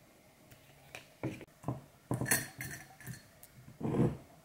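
Glass swing-top jars with wire clasps handled on a table: a series of light knocks and clinks of glass and metal clasp, the sharpest clinks about two seconds in and a heavier knock near the end.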